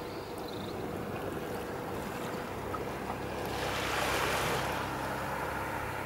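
Calm sea water lapping at the shore, with one small wave washing in louder about halfway through and then fading.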